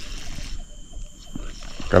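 Low riverside background with a faint steady high-pitched whine, and a man's drawn-out voice starting right at the end.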